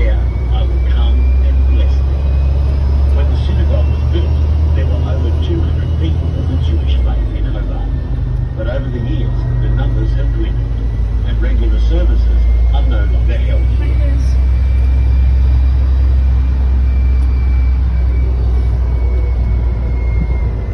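Tour bus driving along a city street, heard from on board: a steady low engine and road rumble that shifts in pitch about seven seconds in, with faint rising and falling whines from the drivetrain and indistinct background chatter.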